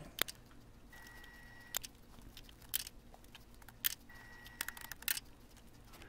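Faint scattered clicks and light handling sounds from hands working a small plastic plant pot of potting soil, with a faint high steady tone heard twice, each time for under a second.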